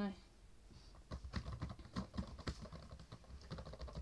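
Typing on a laptop keyboard: irregular key clicks starting about a second in.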